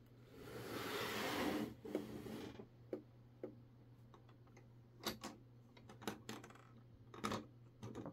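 A LEGO brick model handled and moved on a tabletop: a soft scraping rush for about two seconds as it slides, then a handful of light, scattered plastic clicks of bricks. The clicks come from a part that has come loose inside the model.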